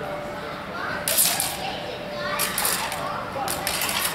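Longsword blades clashing in three quick flurries about a second apart, with voices calling out between them.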